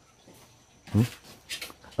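A single short murmured "ừ" (a grunt of assent) about a second in, then faint rustling and light clicks; otherwise quiet room tone.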